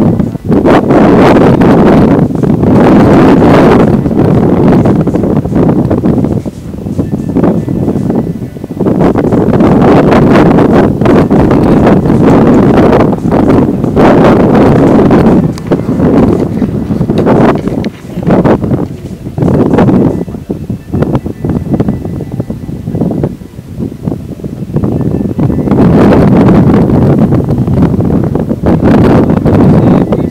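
Strong wind buffeting an outdoor microphone, a loud rumbling wind noise that surges in gusts every few seconds and eases off somewhat through the middle.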